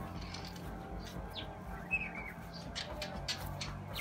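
A few short, faint bird chirps over a steady low background hum, with some light clicks near the end.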